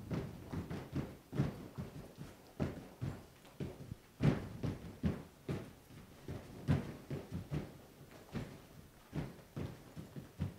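Irregular, quiet thumps and scuffs of a dancer's shoes stepping and stamping on an artificial-turf floor, a few a second.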